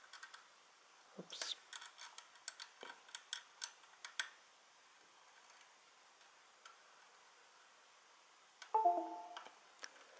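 Faint, irregular small clicks and ticks of a bent paperclip probing and pressing the recessed buttons on a small computer box's case, over a few seconds, then near silence. Just before the end, a short electronic chime of a few tones stepping down in pitch.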